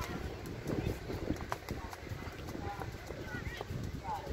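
Distant voices of players and spectators calling briefly across a football pitch during play, over a steady low rumble, with a few sharp knocks.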